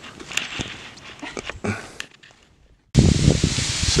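Light footsteps and rustling as a hiker runs along a dirt forest trail, with a few soft scuffs and clicks. The sound drops to silence about two seconds in, then a loud steady rushing noise cuts in suddenly near the end.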